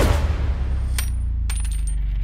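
Bullets that bounced off a body dropping onto a hard floor: one sharp metallic clink with a high ring about halfway through, then a few lighter tinkling clinks near the end, over a low steady rumble.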